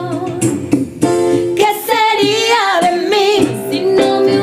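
A woman singing a worship song over sustained instrumental accompaniment, with a long, wavering, ornamented phrase in the middle.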